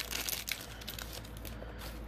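Foil wrapper of an Upper Deck hockey card pack crinkling as it is torn open. It is loudest, with small crackles, in the first half second, then settles to a softer rustle.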